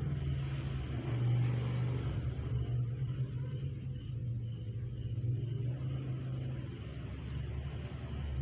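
A steady low mechanical hum or rumble, like a motor or engine running, with no clear starts or stops.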